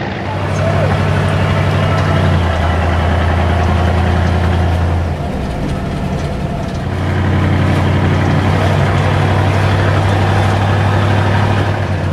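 MAN KAT1 off-road truck's engine running while driving, heard from inside the cab. The engine note steps down about two seconds in, eases off around five seconds in and picks up again near seven seconds in.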